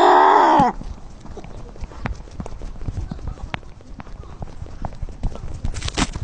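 A cat's drawn-out yowl that breaks off under a second in, followed by a run of quick, irregular taps and scuffs like feet running on hard ground.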